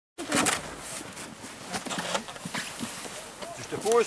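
Short snatches of voices over scuffing and crunching of boots on packed snow around a plastic sled.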